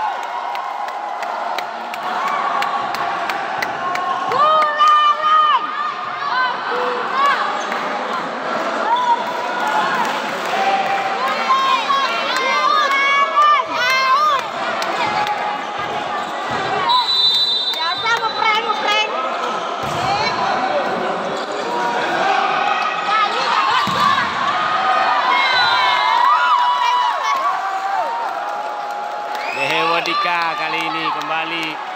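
Volleyball rally in a large indoor hall: ball hits and court knocks under players' and spectators' shouts and calls, with a steady high whistle about halfway through.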